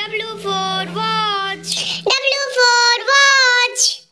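A child's voice singing the alphabet line for W, 'W for watch', in two held phrases, each ending on the hiss of '-tch'. A low steady backing note sounds under the first phrase and stops about halfway through.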